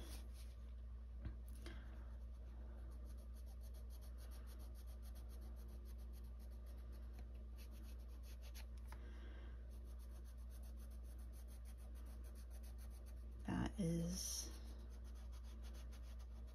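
Colored pencil scratching on coloring-book paper in small repeated strokes, faint over a low steady room hum, with a brief murmur of voice near the end.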